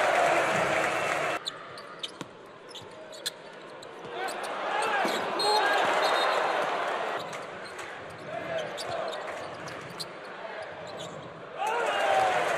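Basketball game sound from the court: a burst of loud crowd noise that cuts off abruptly about a second and a half in, then the ball bouncing on the hardwood floor with sharp scattered knocks over arena background noise.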